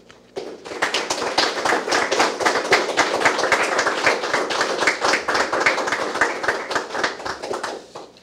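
Audience applauding, starting about half a second in and dying away near the end.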